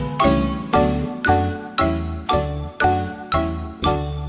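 Background music: a bright, bell-like melody with notes struck about twice a second, each ringing on, over low bass notes.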